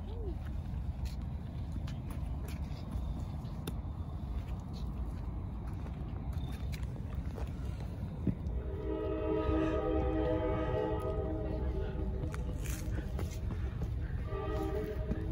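A train horn sounds one long, steady blast starting about nine seconds in and lasting about four seconds, over a continuous low rumble.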